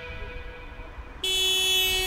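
Low road rumble, then a little over a second in a car horn sounds in one steady, buzzy blare.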